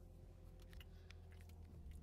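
Quiet, steady low drone inside a car's cabin while driving, with a few faint clicks.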